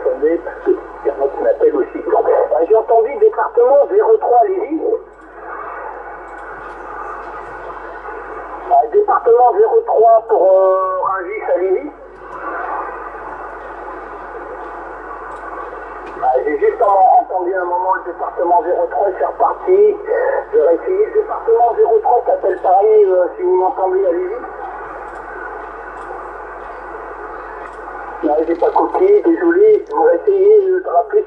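Voices received over a Yaesu FT-450 transceiver's speaker on the 27 MHz CB band, thin and tinny. Steady static hiss fills three pauses between the transmissions.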